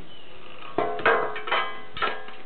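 Background music: a plucked string instrument playing a few ringing notes, starting about three quarters of a second in.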